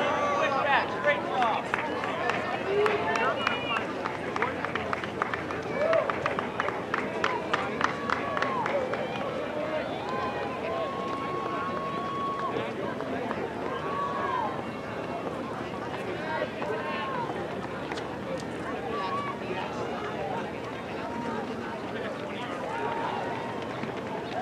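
Spectators at a cross-country course calling out and shouting encouragement to passing runners, single raised voices rising and falling at scattered moments. Sharp clicks run through the first eight or nine seconds.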